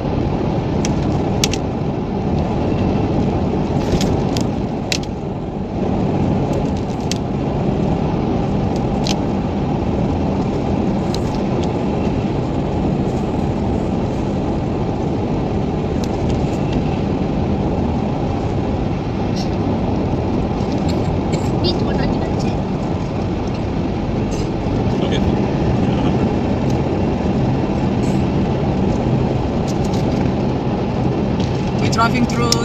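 Steady road and engine drone heard from inside a moving car, with scattered sharp clicks.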